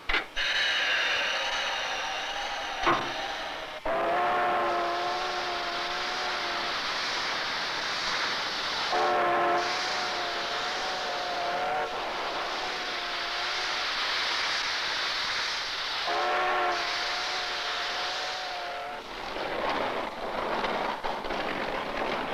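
Steam locomotive whistle blowing: one higher blast, then three long, slightly wavering lower blasts of about three seconds each. Under them runs a steady hiss of escaping steam, from a brand-new engine being tested under steam pressure for the first time.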